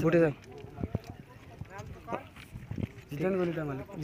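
A man talking in short phrases with pauses, and a few sharp clicks between them, the loudest about a second in.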